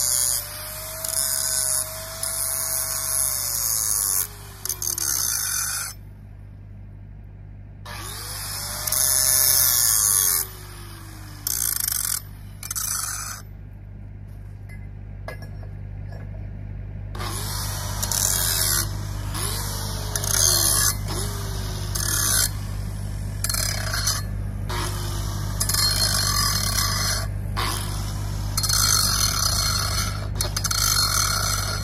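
Handheld angle grinder working a steel pipe end in short passes: bursts of grinding hiss against the metal, with the motor's whine falling away each time the trigger is let go and the disc spins down. A steady low hum runs underneath.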